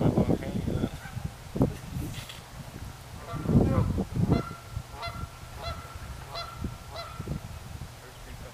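Geese honking: a run of repeated honks, roughly one every half second, through the second half. Low rumbling bursts come at the start and again about halfway.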